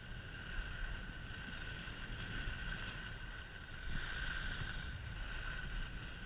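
Wind buffeting an action camera's microphone during a fast downhill slide on groomed snow, with the hiss of sliding on the snow swelling twice, about two seconds in and more strongly about four seconds in.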